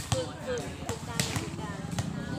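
A volleyball thudding sharply several times as it bounces on the concrete court and is hit, with people's voices calling in between.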